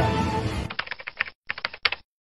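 Background music that breaks off after about half a second, followed by about a second of rapid, sharp clicks like keyboard typing, in two quick runs with a short break between them.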